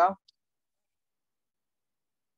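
A man's spoken word ending, a single faint short click just after, then dead silence.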